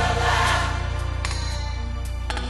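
Gospel mass choir singing with instrumental backing that holds sustained low notes.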